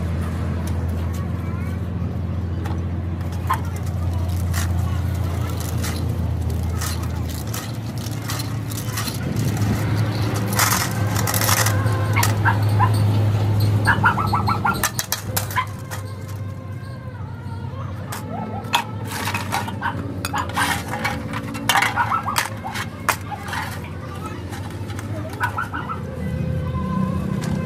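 A low steady hum for most of the first half, then metal clinks and rattles as loose truck wheel-bearing rollers and their cage are handled in a metal pan of washing oil.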